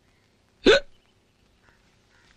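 A person's single short hiccup, about two-thirds of a second in.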